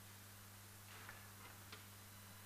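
Near silence: room tone with a steady low electrical hum and a few faint, short clicks.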